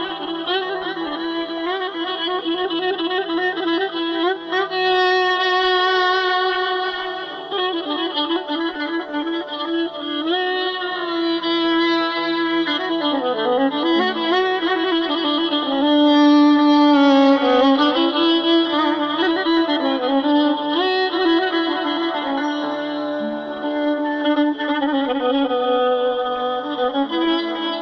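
Violin playing a Persian classical melody in dastgah Mahour, with sliding, wavering ornaments, over a steady low held note.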